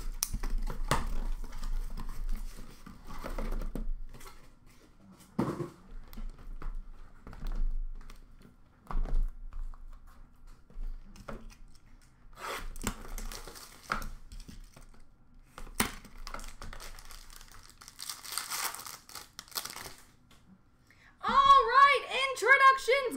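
Cardboard card boxes being handled and opened: scattered knocks, scrapes and rustles, with a longer stretch of crinkling and tearing packaging near the end.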